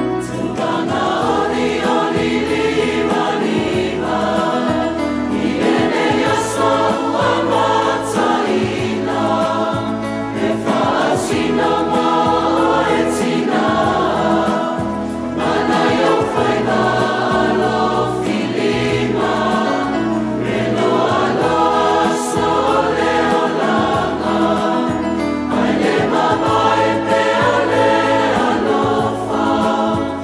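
Mixed choir of men and women singing a Samoan song in harmony, in phrases of about two seconds, over a steady low accompaniment.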